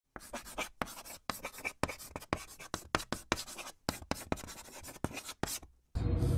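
Quick, scratchy scribbling strokes, about four or five a second in an uneven rhythm, stopping shortly before the end.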